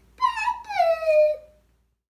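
A young girl's high-pitched two-note goodbye call, the second note longer and gliding downward. The sound then cuts to silence.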